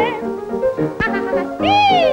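Operatic soprano voice singing short swooping phrases over a musical accompaniment, then one long note that glides up and falls away near the end.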